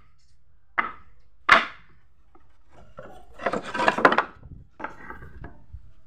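Wooden boards and offcuts knocking together as they are handled on a pile of scrap wood. Two sharp knocks come first, then a longer clatter and scrape of wood on wood about halfway through, then a few lighter knocks.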